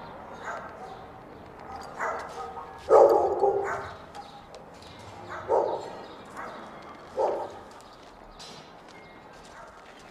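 A dog barking in short bursts: a few scattered barks, with the loudest run about three seconds in, then single barks a couple of seconds apart.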